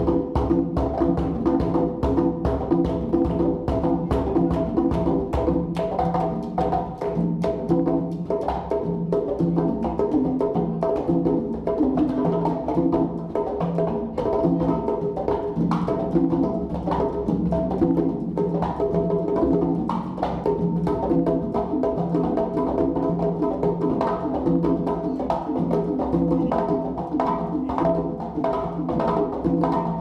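Several conga drums played by hand together in an interlocking Cuban rumba rhythm, dense sharp slaps over ringing open tones.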